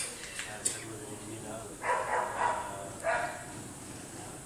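A dog barking three times in quick succession, against the low murmur of a room of people.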